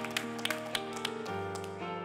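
Gospel keyboard music in a church: held chords with a quick run of sharp percussive taps that stops a little over a second in, leaving the sustained chords to change on their own.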